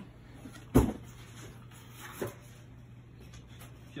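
A sharp thump about a second in, then a lighter knock after about two seconds, as things are set down on the floor. A faint steady low hum lies under it.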